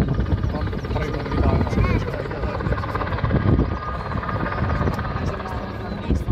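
Finnish Border Guard helicopter flying past with an underslung load, a steady rapid rotor chop and turbine noise. People's voices are heard over it.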